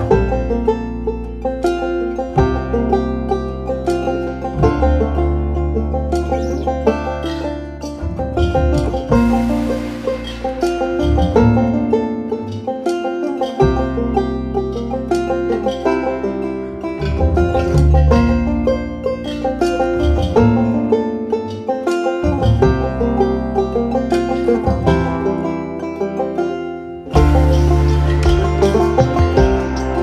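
Instrumental background music: a fast-picked plucked-string melody over a bass line that changes every couple of seconds.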